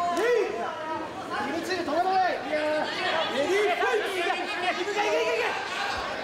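Kickboxing crowd and cornermen shouting, several voices calling out at once over each other.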